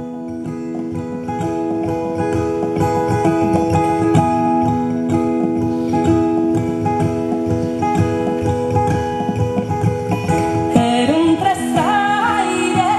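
Solo acoustic guitar played as a song's introduction, plucked notes ringing over steady held tones. A woman's singing voice comes in about eleven seconds in.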